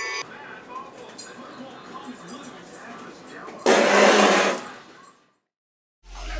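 Jingle-bell music cuts off abruptly, leaving faint voices and room sound. About three and a half seconds in, a loud rushing noise lasts about a second, then fades away to silence.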